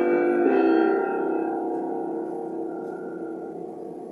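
The end of a piano piece: a last chord struck about half a second in rings on and slowly fades away.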